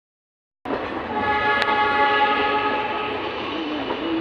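Diesel multiple unit running, heard from its open window, with a multi-tone horn held for about two seconds. A single sharp click comes about a second and a half in.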